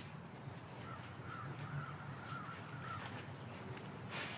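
Quiet outdoor background with a low steady hum and a faint bird calling from about a second in until near the end.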